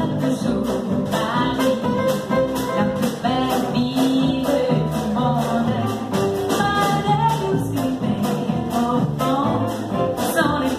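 Live acoustic trio: a woman singing a melody over an evenly strummed acoustic guitar and a plucked double bass.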